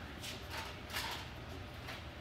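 Model-rocket stability rig spinning a small 3D-printed rocket on an arm at high speed, driven by a stepper motor. A low steady hum runs under short whooshes that come roughly three times a second as the rocket sweeps round.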